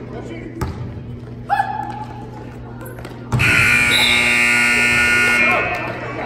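Gymnasium scoreboard buzzer sounding one long, loud blast of about two seconds, starting about halfway through. Before it, a basketball bounces on the court amid crowd chatter.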